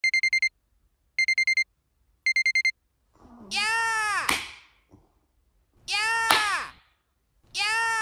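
Electronic alarm beeping: three quick bursts of four or five high beeps about a second apart. Then, from about three seconds in, three loud shouted vocal calls, each with a rising-then-falling pitch.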